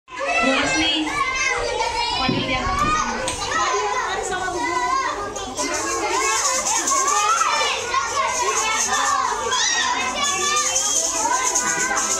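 A room full of young children chattering and calling out at once, many voices overlapping without a break.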